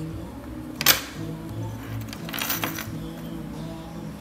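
Background music with a sharp metallic click about a second in and a few lighter clicks later, from the gold metal hardware of a Dior Caro bag being handled.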